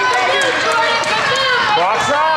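Basketball shoes squeaking on a hardwood gym floor as several players run up the court: many short squeaks that overlap and bend in pitch, one rising squeal near the end. Voices are heard behind them.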